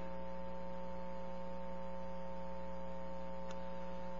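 Steady electrical mains hum, a set of constant tones over faint hiss, with one faint click about three and a half seconds in.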